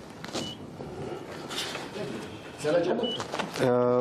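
Council chamber room noise of shuffling, rustling and scattered light knocks, with two short high beeps. A man's voice starts speaking near the end.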